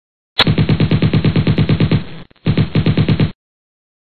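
Machine-gun sound effect: two rapid bursts of about ten shots a second, a longer one and then, after a brief break, a shorter one.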